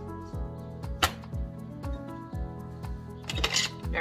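Background music with a steady beat, about two beats a second. Over it, handling of the power roller's plastic parts: one sharp click about a second in and a brief scraping rustle near the end as the roller cover goes back onto its frame.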